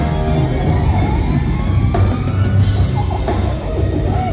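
Live rock band playing loud on stage: drum kit and electric guitars, with a guitar note gliding slowly upward in pitch over the first couple of seconds.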